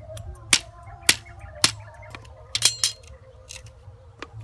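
Cleaver chopping thin green bamboo stems: sharp, separate strikes about every half second, with a quick cluster of cuts near the end.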